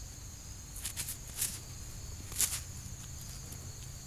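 Steady high-pitched insect chirring, with a few brief rustles of handling mixed in, the loudest about two and a half seconds in.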